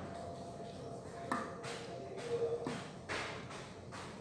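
Kitchen tongs handling cooked pasta in a glass baking dish: soft shuffling with a few light clicks of the tongs against the glass, clearest about a second in and again near three seconds.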